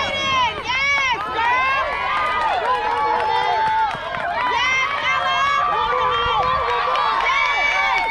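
Many high-pitched voices shouting and cheering over each other at a softball game, several calls drawn out for a second or more.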